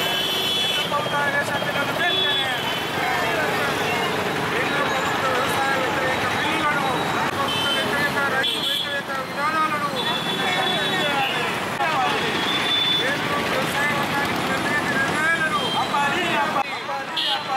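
Voices talking continuously over street traffic noise, with a few short high tones cutting through now and then.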